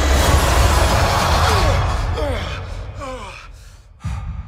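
Cinematic trailer sound effects: a loud rumbling swell with heavy low end that, about halfway through, breaks into a series of falling pitched swoops and fades away.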